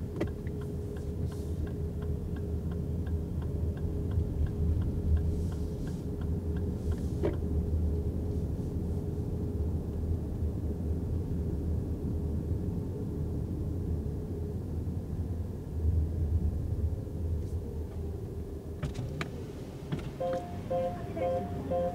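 Cabin noise inside a 2024 Lexus RX350h hybrid SUV moving slowly: a steady low rumble of tyres and drivetrain with a faint steady hum. A run of light ticks, two or three a second, sounds over the first several seconds.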